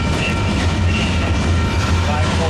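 Union Pacific freight train of covered hopper cars rolling past, a steady low rumble of wheels on rail.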